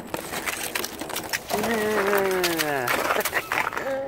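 Crusted snow and ice being pushed off a car with a snow brush, crunching and cracking in many quick clicks. About a second and a half in, a person gives one long, falling 'ooh'.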